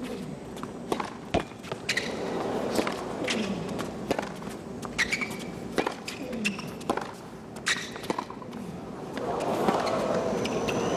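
Tennis rally on a hard court: sharp racket-on-ball hits about once a second, with ball bounces in between. Crowd noise rises near the end as the point finishes.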